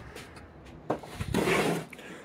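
A light knock just before a second in, then about a second of scraping as a metal square is slid across a wooden tabletop.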